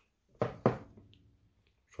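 Two light knocks about a quarter second apart, under a second in, from a wristwatch being handled in the clamp of a timegrapher stand.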